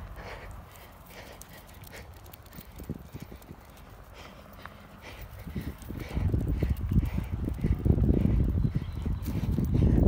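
Rhythmic footsteps of a person walking and jogging on a paved path while carrying the camera. They are faint at first and grow much louder from about six seconds in, with a low rumble on the microphone.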